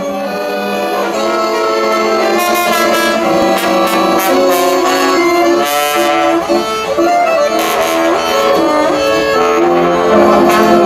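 Live acoustic jazz from a trio: trombone playing sustained melody lines together with chromatic accordion, with cello in the ensemble.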